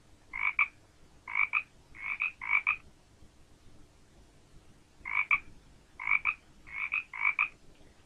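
Recorded frog croaking: a run of about four short croaks, some doubled, then a pause of about two seconds and a second run of about four croaks.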